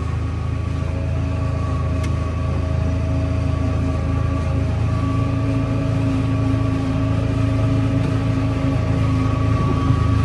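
Massey Ferguson 7615 tractor's engine running steadily under load, heard from inside the cab, with a steady hum that firms up slightly about halfway through.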